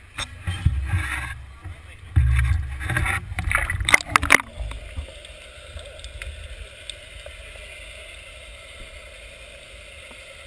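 Action camera being handled and dipped into marina water: bumping, rumbling and splashing for the first four seconds or so, then the steady, muffled hiss of the water heard from below the surface, with faint scattered clicks.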